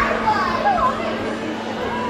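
Background chatter of many children's voices calling and talking over one another in a large indoor hall, with a steady low hum underneath.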